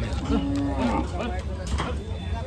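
Cattle lowing: one short, steady moo about a third of a second in, with men's voices chattering around it.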